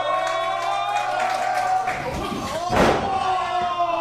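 A long held shout, then, nearly three seconds in, one heavy thud of a wrestler's body hitting the ring mat: a missed drop, the opponent having slipped out from under it.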